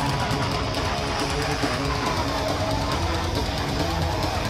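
Loud heavy metal music with distorted electric guitar, dense and steady.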